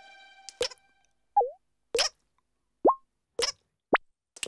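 Cartoon water-drip sound effects: a run of drops plopping one after another, each a short rising 'plink', mixed with sharp ticks about every second and a half. The last chord of guitar music is dying away at the start.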